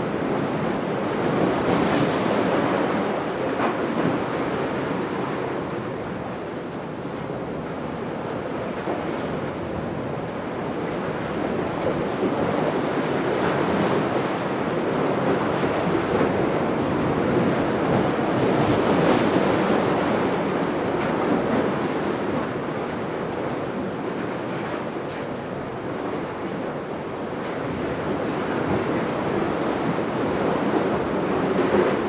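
Rushing, splashing water of spray and wake, with wind buffeting the microphone; a steady wash that swells and eases slowly over several seconds, with no clear engine note.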